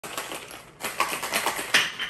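Ice rattling inside a stainless steel cocktail shaker as it is shaken: a fast run of sharp clicks, briefly pausing just before the first second, then growing louder.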